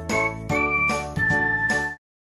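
A short bright music jingle: chiming, bell-like notes about every half second over a steady accompaniment, with a few long held high notes, cutting off suddenly at the end.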